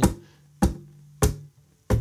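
Acoustic guitar played with a strummed groove of muted strokes on a G chord: four sharp, percussive hits about two-thirds of a second apart, with a low bass note ringing under the first three before it stops. The damped strokes give the rhythm a snare-drum feel.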